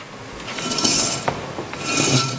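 A small metal pot scraped along a stage floor: two rasping scrapes, each swelling and fading over about half a second, about a second apart.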